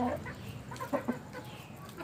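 Chickens clucking: a call trails off at the start, then a few short clucks come about a second in.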